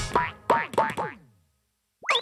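Cartoon boing sound effects for a bouncing ball: about four falling-pitch boings, coming closer together and growing fainter as the ball bounces to rest.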